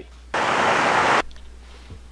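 A burst of static-like hiss, just under a second long, that starts and stops abruptly: an editing transition effect between two clips.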